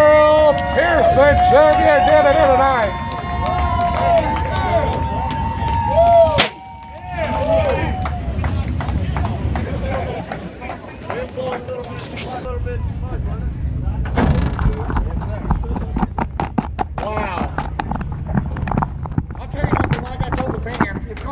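Indistinct voices and whooping calls at a race-car celebration. From about twelve seconds in come repeated knocks and bumps on the microphone, with voices behind them.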